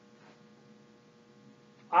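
Near silence with a faint steady electrical hum, made of several thin constant tones; a man's voice starts right at the end.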